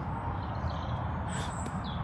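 Outdoor ambience: a steady low rumble on the microphone, with a few faint bird chirps about two-thirds of the way in.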